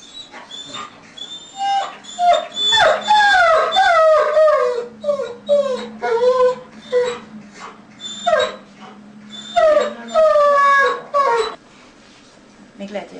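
German shepherd bitch in labour whining, a string of falling-pitched whines in two loud bouts, about two seconds in and again near the end.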